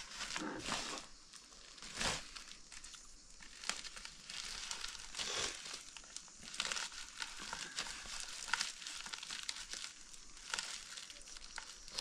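Woven plastic sack rustling and crinkling in irregular bursts as its neck is bunched up and tied shut with string.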